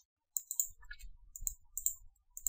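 A string of short, quiet clicks from a computer mouse and keyboard.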